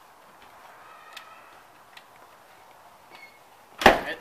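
Faint background hiss with a few light clicks, then a house's front door shuts with one sharp thud near the end.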